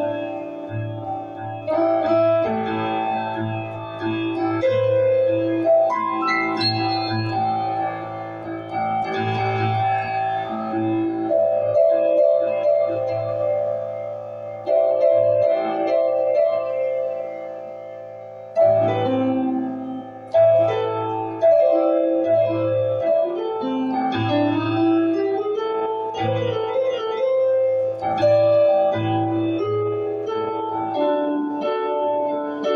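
Keyboard music, piano-like, playing chords and melody notes that are struck in phrases and left to ring over a steady low bass tone.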